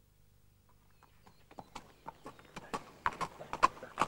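A horse's hooves clopping at a walk on a paved road, a few strikes a second, growing louder as the horse approaches after about a second of near silence.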